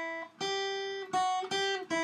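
Steel-string acoustic guitar playing a slow melody of single picked notes on the high E string, about four notes. The notes go G, F-sharp, G, then drop to the open E string.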